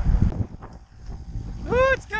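Two short, clear animal calls near the end, the first arching up and then down in pitch, the second falling, after wind rumbling on the microphone at the start.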